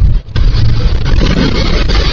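A loud, low rumbling noise, broken by a short dip about a quarter of a second in.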